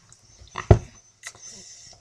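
A girl laughing briefly, in one short burst about two-thirds of a second in, with a smaller catch of breath a little later.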